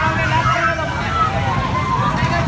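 Several people shouting over one another in an agitated crowd, their raised voices overlapping, over a steady low rumble.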